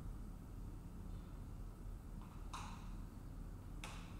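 Quiet room tone with a steady low hum, broken by a short soft hiss about two and a half seconds in and a faint click just before the end.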